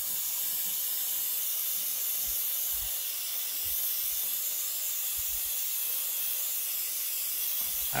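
Gravity-feed airbrush spraying paint, a steady hiss of compressed air that holds at an even level throughout.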